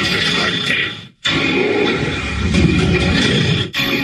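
Television commercial soundtrack of music and sound effects, broken by a short silence about a second in as one clip cuts to the next, with another brief dip near the end.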